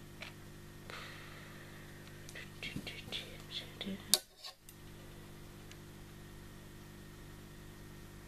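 Soft rustling and small clicks of tissue paper being handled and pulled from a small plastic shipping vial, with one sharp click about four seconds in, over a faint steady low hum.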